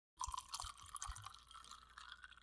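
A few faint small clicks and taps over low microphone hiss.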